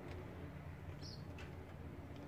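Quiet workbench room tone: a steady low hum with a brief faint high squeak about a second in, followed by a soft click, as small hand tools and parts are handled.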